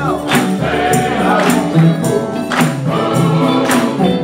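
Men's gospel choir singing with band accompaniment: low sustained bass guitar notes under the voices and a sharp percussion hit about once a second.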